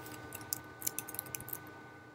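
Quiet, irregular clicking of computer keyboard keys being typed, about ten light taps over the first second and a half, then stopping.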